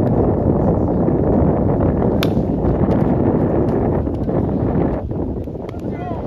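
Wind buffeting the microphone in a loud, steady rumble, with one sharp crack about two seconds in: a plastic wiffle ball bat hitting the ball.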